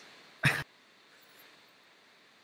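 A single short vocal burst from a man about half a second in, lasting a fraction of a second, over faint room tone.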